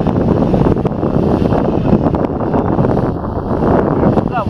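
Steady wind noise buffeting the microphone over the rush of churned river water and the running of a boat on a strong current.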